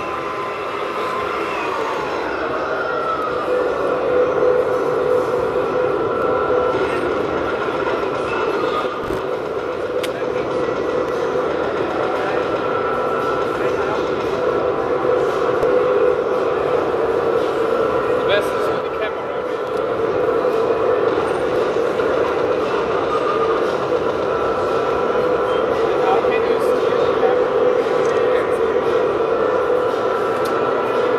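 Digital sound unit of a Hooben 1/16 RC M1A2 SEP Abrams tank playing a steady high turbine-engine whine as the model drives, with background voices.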